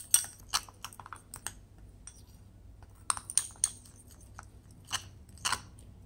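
Metal spoon stirring a wet paste of ground cinnamon and lemon juice in a small glass bowl: irregular gritty scrapes and light clicks of the spoon against the glass, with a short lull near the middle.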